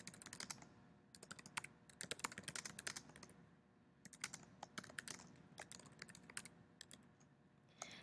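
Faint typing on a computer keyboard: runs of quick keystrokes in short bursts with brief pauses between them.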